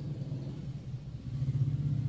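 A low, steady rumble, dipping briefly a little past the middle.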